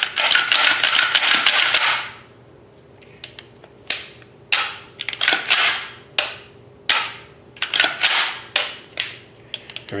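Function check of a reassembled LWRCI SMG-45 .45 ACP delayed-blowback pistol: about two seconds of metallic rattling as the action is worked, then a string of separate sharp metallic clicks, roughly one or two a second, from the charging handle, bolt, trigger and hammer being cycled. The action is working correctly after reassembly.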